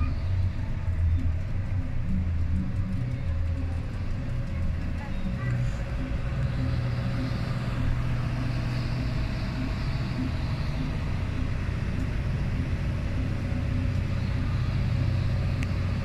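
Steady low rumble of a car ferry's engines, with a steady hum over it.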